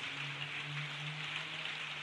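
Rain falling steadily, an even hiss of drops, with a faint low hum underneath.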